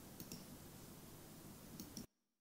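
Near silence: faint hiss and a low hum with a few soft clicks.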